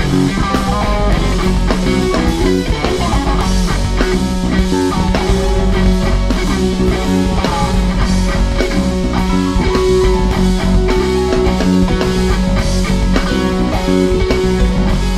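Live band playing an instrumental rock jam: an electric guitar lead over bass and a drum kit keeping a steady beat.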